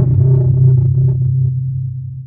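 Deep, steady rumble of a logo-intro sound effect, the tail of a boom, slowly fading toward the end.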